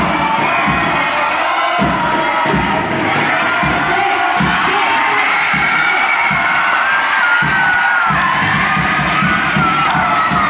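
A loud indoor crowd of spectators cheering and shouting, many voices at once, with long wavering shouts in the second half, as a fighter is knocked down in a full-contact martial-arts bout.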